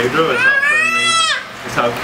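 Infant's high-pitched, drawn-out vocal squeal lasting about a second, rising at the start and falling away at the end.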